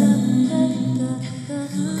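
Layered live-looped a cappella vocals by a woman: sustained hummed tones holding a low chord between sung lines. The level dips briefly just past the middle, then comes back up.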